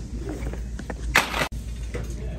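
Low steady shop background hum, with one short, loud rustle of handling noise a little past a second in that cuts off abruptly.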